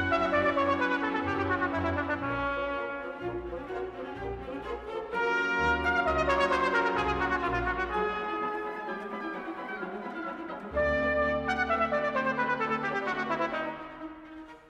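Solo trumpet with symphony orchestra and brass playing an orchestral concerto piece. Three loud passages enter suddenly, at the start, about five seconds in and near eleven seconds in. Each has a held low chord under descending figures, and the music drops back at the end.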